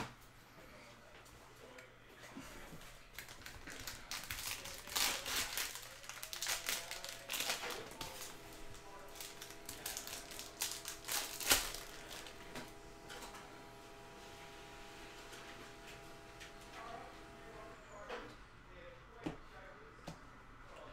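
Plastic cello wrapper of a trading-card pack crinkling and tearing as it is opened by hand, in a run of crackles with one sharp snap near the middle.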